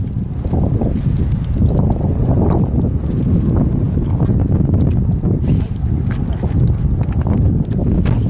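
Strong wind buffeting the microphone: a heavy, steady low rumble, with a few faint clicks over it.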